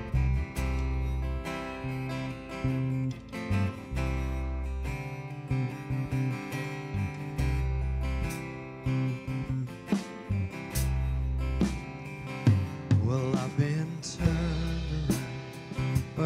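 Live band playing a slow worship song: strummed acoustic guitar over held electric bass notes and a drum kit with cymbals.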